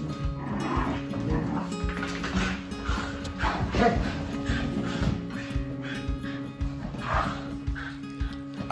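A Vizsla and a Jack Russell terrier play-fighting, with barking, over steady background music.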